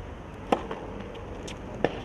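Tennis ball struck hard by a racket on a serve, about half a second in, then struck again by the return a little over a second later.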